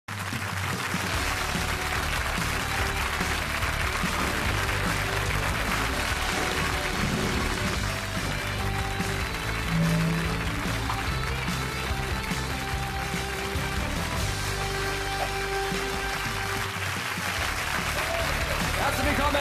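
Television show theme music playing over steady audience applause.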